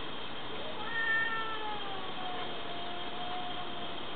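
A cat's single long meow, starting about a second in and sliding slowly down in pitch over about three seconds.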